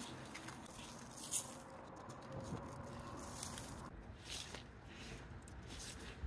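Bone meal plus fertilizer being sprinkled by hand, the dry meal pattering faintly onto soil and gravel in a few short spurts.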